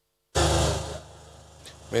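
Dead silence at an edit cut, then a short burst of crowd room noise with a low hum that quickly fades to a faint background hiss.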